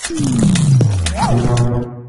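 News channel logo sting: a deep sound effect that slides down in pitch over about a second, followed by a held musical chord that cuts off just before the end.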